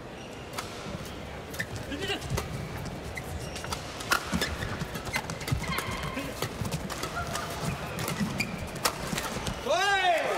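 Badminton rally: rackets strike the shuttlecock back and forth in sharp cracks at an irregular pace, with short shoe squeaks on the court over a steady arena crowd murmur. Near the end a loud shout rises and falls as the rally is won.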